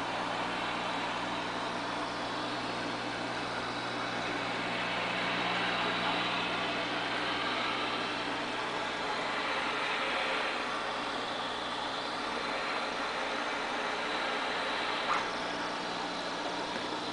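Steady hum and hiss of running aquarium equipment, an electric air pump feeding the tank's air line, with one short click about a second before the end.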